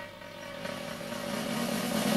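Cartoon soundtrack: a drum roll swelling steadily louder over a held buzzing note, building toward a hit.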